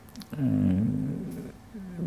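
A man's voice holding a long hesitation sound, a drawn-out "ehm" lasting about a second, followed by a brief voiced sound near the end as he resumes speaking.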